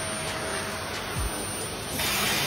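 Vacuum cleaner running steadily, a continuous hiss of motor and suction as the floor nozzle passes over a cat lying on tiles, with a low thump a little past a second in.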